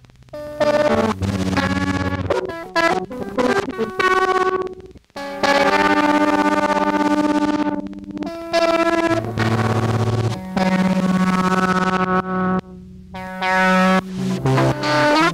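Fender Esquire 9-string electric guitar played through an amp and an ARP 2600 synthesizer clone: a run of effected notes at changing pitches, some held for a second or two, starting and cutting off abruptly.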